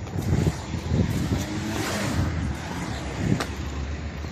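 Muffled street traffic and rumbling handling noise picked up by a phone camera left recording while it is carried, with a short knock about three and a half seconds in.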